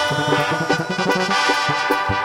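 Live tierra caliente band music in an instrumental passage between sung lines: held melody tones over a quick run of bass notes and drums.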